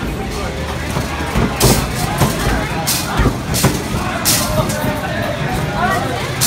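Street noise with traffic and background voices, with several short sharp noise bursts; crowd chatter of a busy bar near the end.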